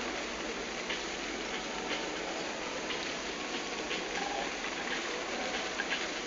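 Steady hiss of open-air ambience picked up by a phone microphone, with a few faint clicks scattered through it.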